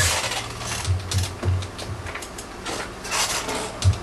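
Clicking of a sampler's buttons and pads being worked by hand, with a few short low bass hits sounding between the clicks.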